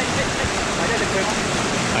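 Fast-flowing river rapids rushing over rocks close by, a steady, even noise.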